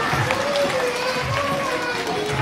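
A young boy singing a devotional bhajan into a microphone, holding long notes that slide between pitches, over soft low drum beats and the audience clapping along.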